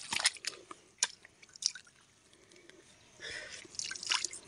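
Wet squelching and a few short sharp clicks as fingers work in waterlogged sand, pulling a sea worm out of its burrow.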